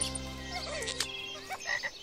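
A frog croaking sound effect, heard as short wavering calls in the second half, over the last held chord of a jingle that dies away about a second in.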